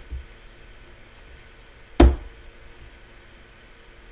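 A single sharp knock about two seconds in, like a hard object set down or bumped on a desk, preceded by a softer low thump at the start.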